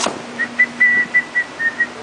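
A person whistling a short run of about seven quick notes, the pitch drifting slightly lower toward the end.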